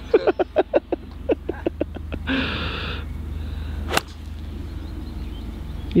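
Laughter trailing off, then the single sharp click of a golf iron striking the ball off the fairway about four seconds in, over a steady low rumble of wind on the microphone.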